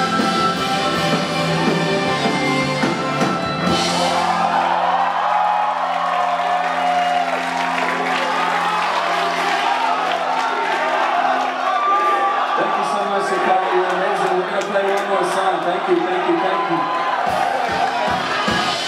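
Electric guitars and band holding sustained, ringing chords, with the crowd cheering, shouting and whooping over them from about four seconds in.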